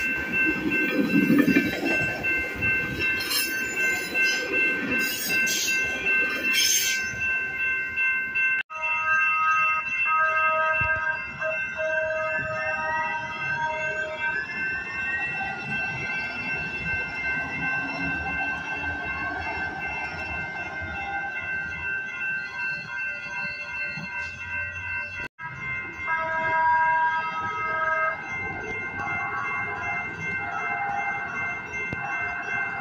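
A Coaster commuter train's bilevel cars rumbling past at a level crossing while the crossing's warning bells ring in an even beat. After an abrupt break, San Diego Trolley light-rail cars roll past with a rising whine as they gather speed. The sound breaks off sharply twice.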